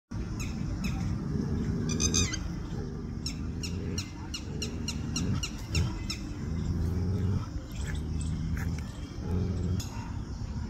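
Birds chirping repeatedly in short high calls, a quick run of chirps in the middle, over a low, uneven rumble.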